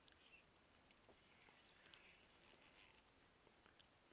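Near silence: faint outdoor background with a few faint, short high chirps.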